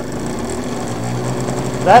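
Small 14-volt cordless-drill motor switched on and spinning a Bühler printer motor as a generator: a steady mechanical whir that starts suddenly, its low hum growing stronger about a second in.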